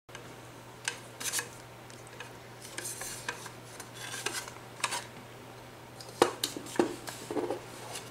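Hands handling a small black shadow-box coin bank on a tabletop: irregular light clicks, taps and brief rubbing as a glued cardstock bunny cut-out is pressed into the frame.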